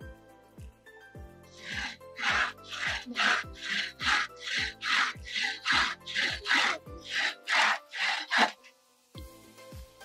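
Bow saw cutting through a length of timber in a steady back-and-forth rhythm of about two to three strokes a second, starting a little over a second in and stopping near the end.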